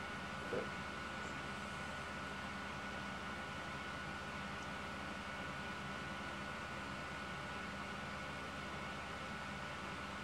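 Steady background hiss and low hum with a faint, steady high-pitched whine, the running noise of the powered electronics bench. A brief faint sound comes about half a second in.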